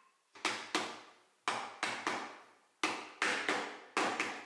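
Mallet striking a dovetailed walnut frame corner to seat the joint: about eight sharp knocks in uneven groups of two or three.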